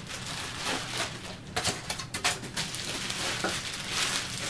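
Polystyrene foam packing being pulled off a plastic-wrapped portable turntable, with plastic bag rustling and crinkling and a few sharp crackles about halfway through.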